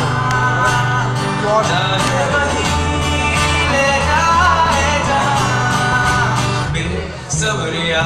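Live song by a small band: a male singer over strummed acoustic guitar and electric bass. The music dips briefly about seven seconds in, then the strumming carries on.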